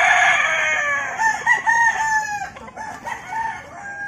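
A rooster crowing: one long call that falls slightly in pitch and ends about two and a half seconds in, followed by a few shorter, fainter calls.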